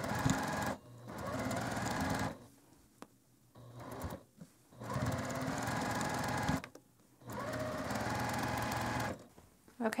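Juki TL2000Qi sewing machine stitching a quarter-inch seam in five runs with short stops between them, the longer runs lasting about one and a half to two seconds, as pinned quilt pieces are fed through one after another without cutting the thread.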